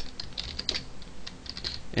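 Typing on a computer keyboard: a run of short, irregular key clicks.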